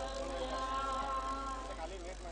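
A group of Buddhist monastics chanting in unison, holding one long steady note that trails off near the end.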